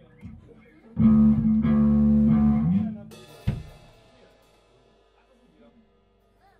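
Amplified electric guitar and bass sounding a loud, distorted chord for about two seconds, then cut off, followed by a single drum and cymbal hit that rings out and fades.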